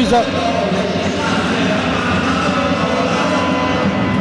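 Steady murmur of spectators' voices blending together in a reverberant indoor sports hall during a handball match.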